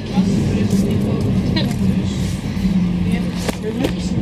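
Steady low hum and rumble inside a passenger train carriage, holding one low tone throughout.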